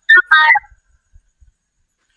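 Two short electronic beeps in quick succession in the first half-second, then dead silence.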